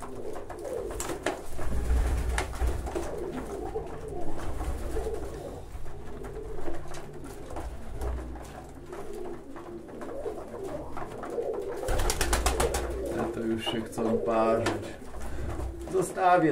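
Domestic pigeons cooing continuously in a small loft as they feed at a grain trough, with a short burst of rapid clicking about twelve seconds in.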